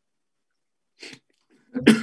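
A man coughs into his hand once, sharply, near the end; a brief fainter sound comes about a second in.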